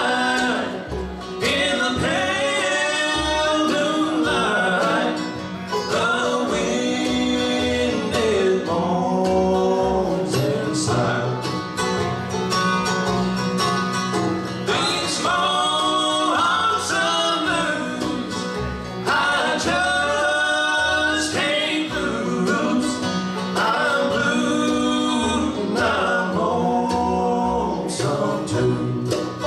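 Live bluegrass band playing a song: sung vocals over acoustic guitar, five-string banjo, mandolin and upright bass.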